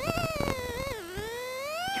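Plymouth Neon rally car's four-cylinder engine under way, its high-pitched note falling to a low point about a second in as the revs drop, then climbing steadily again as it accelerates. Knocks and rattles from the car over rough ground in the first half.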